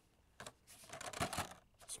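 Plastic blister pack on a cardboard toy card crinkling and clicking as it is bent in the hands: a string of faint rustles and small clicks starting about half a second in.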